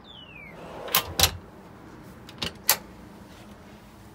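Storage drawer and hinged hatch door in a boat's fiberglass console being worked: a short falling squeak as it opens, then a sharp knock and a double knock about a second in, and two lighter clicks a little later.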